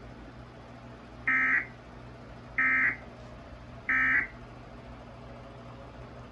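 Emergency Alert System end-of-message data tones from a TV speaker: three short, identical, high-pitched digital bursts a little over a second apart, marking the end of the alert, over a low steady hum.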